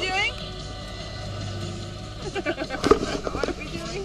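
Car interior noise: a steady low hum over a constant hiss, with short bits of a woman's voice and a few sharp clicks, the loudest click about three seconds in.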